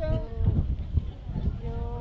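Men's voices calling out in drawn-out, held shouts, with irregular low thumps in between.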